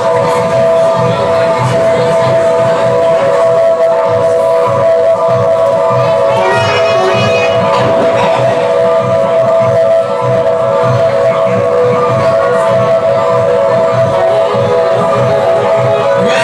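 Live jazz-funk band playing an instrumental passage: a sustained chord held throughout over a steady low rhythmic pulse, with a brief sliding line about six to eight seconds in.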